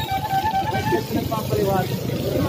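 Busy street sound: scattered voices of a crowd, a long held musical note for about the first second, and a low steady traffic rumble.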